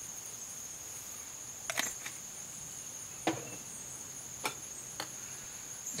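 Crickets trilling steadily at a high pitch, with a few light clicks scattered through.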